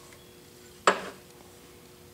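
A single sharp metallic clink about a second in, as a rusty steel C-clamp knocks against other clamps in a box, over a faint steady hum.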